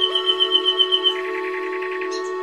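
Slow meditation music: sustained chords held under a rapid high trill, about eight pulses a second, that drops to a lower pitch about halfway through.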